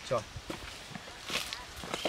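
A few soft, scattered footsteps and shuffling as people get up and move off.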